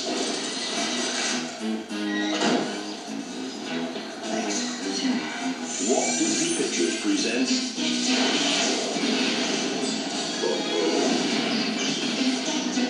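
Film trailer soundtrack playing from a VHS tape through a television's speaker: music with snatches of dialogue and a crash.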